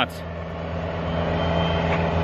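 A motor vehicle's engine running with a steady low hum that grows gradually louder.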